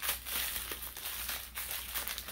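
Thin plastic packaging crinkling in a run of short rustles as a small pouch is handled and unwrapped in the hands.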